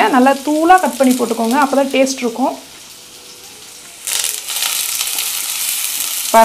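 A voice with a wavering pitch for the first couple of seconds, then chopped onions and curry leaves sizzling in oil in a nonstick kadai, with a wooden spatula stirring them from about four seconds in.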